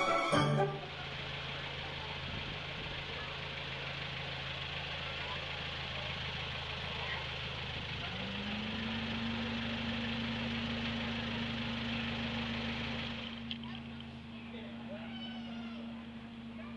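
Miniature zoo train locomotive standing at the platform with its engine idling: a steady low hum under a hiss. About eight seconds in, a second low steady drone joins with a short rise in pitch and keeps going, and the hiss fades out a little after.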